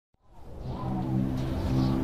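Chamber choir holding a low, sustained chord of several voices, fading in from silence over a low rumble; the held pitches shift slightly about halfway through.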